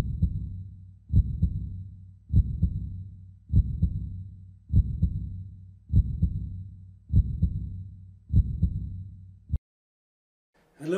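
Slow, steady heartbeat sound effect: a deep double thump repeating about every 1.2 seconds, about fifty beats a minute, that stops abruptly just before the end.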